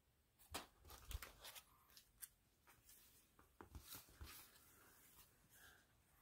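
Faint crinkles and soft clicks of a plastic binder card sleeve page being turned and handled, in two short clusters: about half a second in and again around four seconds in.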